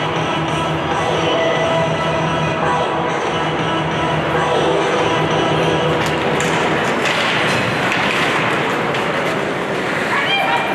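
Music over an ice rink's public-address system, with rink noise beneath; a broader rush of noise rises about seven seconds in.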